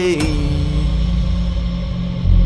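Background music: a wavering tone glides downward and fades out within the first second over a steady low drone.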